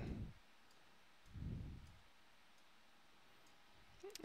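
Near silence with a few faint computer mouse clicks, and a brief soft low sound about a second and a half in.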